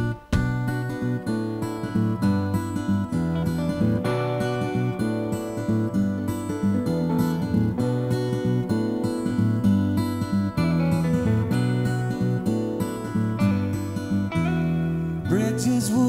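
Acoustic guitars strumming chords in a steady rhythm, playing an instrumental song intro with no singing. The sound grows brighter about a second before the end.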